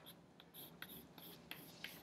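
Faint writing strokes: a handful of short, quick scratches of a pen or marker putting down figures.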